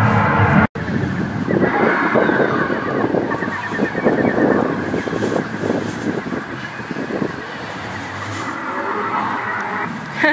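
Recorded dinosaur roars and growls played through a loudspeaker beside an animatronic dinosaur: a rough, rasping, fluttering sound that sounds fake, like a stereo. It is loudest in the first half and eases off toward the end, after a short break in the sound just under a second in.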